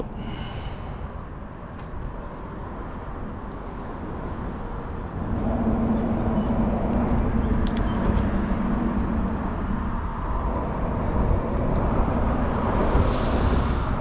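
A steady low outdoor rumble. About five seconds in, the hum of a distant engine joins it, runs for several seconds and fades, and a few faint clicks come through.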